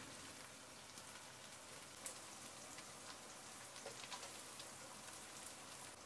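Faint, steady sizzle of chopped fenugreek and coriander leaves frying in oil in a pot, with a few small crackles.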